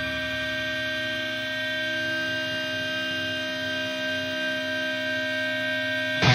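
Ambient intro of a metalcore song: a sustained electronic drone holding one steady chord, with no beat or rhythm.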